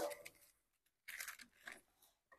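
Faint brief rustle of thin Bible pages being turned, about a second in, followed by a short soft tick.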